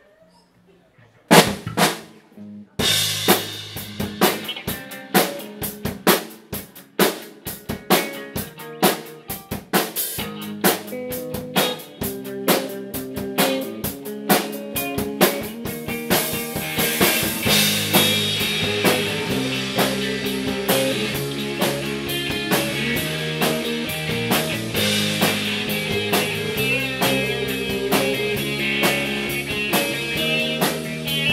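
Live rock band starting a song: after a brief silence a few drum hits lead in, then drum kit and electric guitars come in together about three seconds in, and the playing grows fuller and louder about halfway through.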